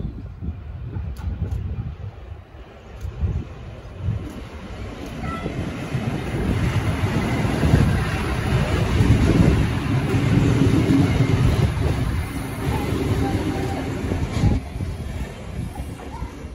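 A NSW TrainLink diesel passenger train passing close by: engine and wheels on the rails build up about a third of the way in, are loudest in the middle, and fade away near the end.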